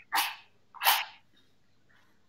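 A match struck twice against its box, two short rasping scrapes under a second apart; it flares alight after the second strike.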